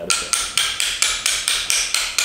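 Hammer tapping the shoulders of a Japanese hand plane's (kanna's) blade in quick, light taps, about four or five a second. The taps drive the blade into the plane body a little at a time to set how far it projects.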